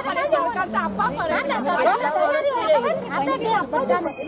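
Several women talking over one another, their voices overlapping.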